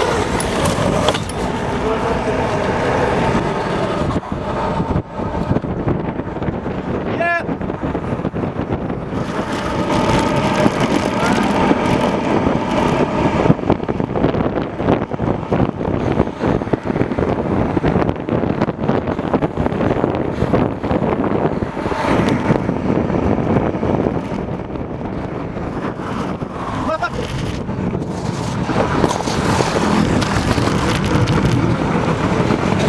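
Kick-scooter wheels rolling fast over asphalt and paving stones, a continuous rough rumble, with road traffic mixed in.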